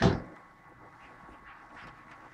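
Quiet room tone, with a short sound right at the start.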